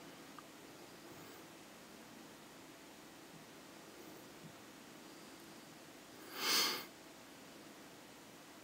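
Faint room tone, broken once about six and a half seconds in by a short, breathy hiss of about half a second: a person breathing out or sniffing through the nose.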